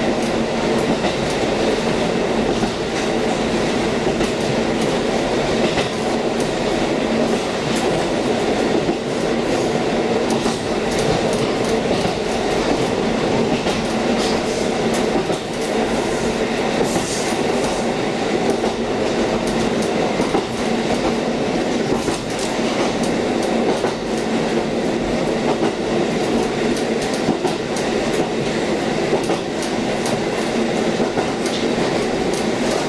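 KiHa 40-series diesel railcar under way, heard from inside the car. The diesel engine runs with a steady hum while the wheels click over the rail joints.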